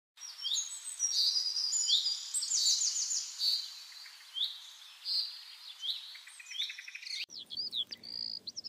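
Birdsong: repeated rising whistled notes and quick trills over a faint steady hiss. It breaks off abruptly about seven seconds in.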